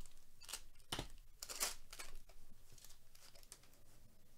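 Stack of trading cards being handled and flipped through with gloved hands: a series of short papery swishes and flicks as card edges slide against one another.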